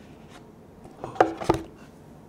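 Cardboard pen box being handled: quiet for about a second, then a brief rub and two sharp taps about a third of a second apart.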